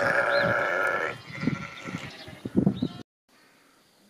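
A sheep bleats loudly for about a second, followed by quieter, scattered sounds. The sound cuts off abruptly about three seconds in, leaving only a faint hiss.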